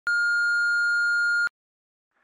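Answering-machine beep: one steady, high electronic tone lasting about a second and a half, then cutting off.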